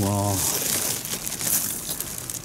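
Papery nest of a yellow hornet (Vespa simillima) rustling and crackling as hands pull a piece of comb out of it, with many small dry crackles.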